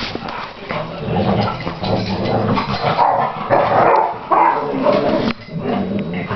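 Two dogs play-fighting, with barks and whines, loudest about three to five seconds in.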